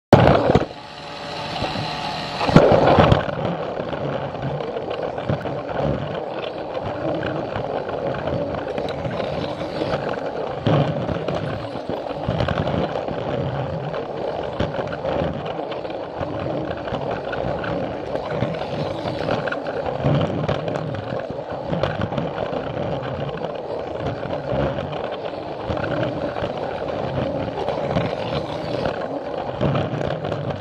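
Battery-powered Plarail toy train and camera car running on plastic track: a steady whirr of the small motor and gears with the rolling of plastic wheels on the rails, with a couple of loud knocks in the first three seconds.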